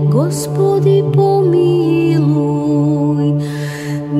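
Orthodox church chant music: a steady low drone held under a gliding, ornamented melody line. A short hiss comes in near the end.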